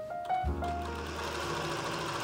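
Janome electric sewing machine running steadily, its needle stitching through cotton bedsheet fabric, under background music with a simple melody.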